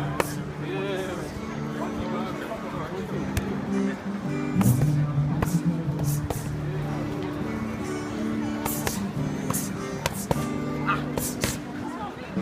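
Boxing gloves hitting focus mitts in about ten sharp slaps at uneven spacing during pad work, over steadily playing pop music with vocals.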